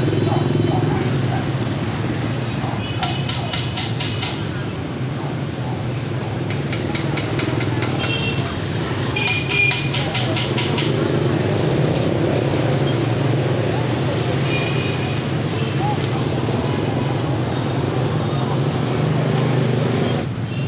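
Steady motorbike and scooter traffic on a busy city street: many small engines running and passing. Two bursts of rapid, high-pitched rattling or ticking come through, about three and nine seconds in.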